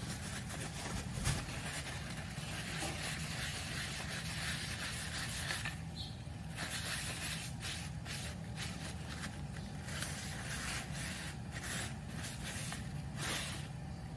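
Cloth rag rubbing beeswax polish into a wooden board, a soft scuffing hiss in repeated strokes with brief pauses, over a steady low hum.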